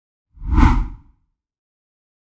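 A single whoosh sound effect with a deep boom beneath it, swelling up about a third of a second in and gone by about one second, as the animated logo intro of a news video plays.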